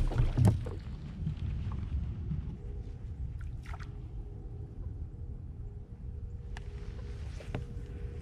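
Low rumble of water and wind around a fishing kayak, with a couple of heavy knocks right at the start and a few sharp clicks later. A faint steady hum comes in about two and a half seconds in.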